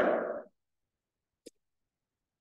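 A man says "all right", then silence broken by a single short click about a second and a half in.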